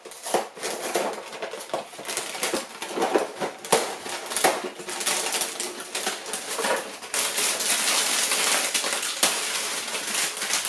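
A cardboard cereal box opened and its plastic liner bag pulled apart: a quick run of sharp crackles and crinkles that turns into steadier rustling over the last few seconds.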